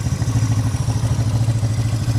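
1976 Honda CB360T's air-cooled parallel-twin engine idling with a steady, even beat, freshly tuned with its carburettors adjusted and ignition set.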